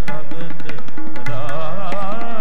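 Sikh kirtan: harmonium and tabla play together. Frequent tabla strokes sound over the sustained harmonium chords, and a voice sings a wavering, gliding melodic line in the second half.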